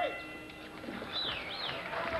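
Ringside bell marking the end of the round, its ring fading away in the first half-second. Then arena crowd noise with a couple of gliding calls.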